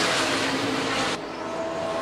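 NASCAR Xfinity stock cars' V8 engines running flat out on track, a dense steady drone and rush of several cars at speed. A little past halfway the bright hiss at the top drops away suddenly.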